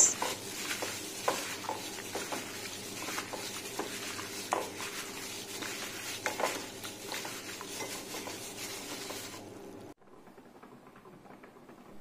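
Sliced eel being mixed by a plastic-gloved hand in a ceramic bowl of honey, lemon, salt and pepper marinade: irregular wet mixing with small clicks of the pieces against the bowl. The mixing fades and stops about ten seconds in, leaving faint room tone.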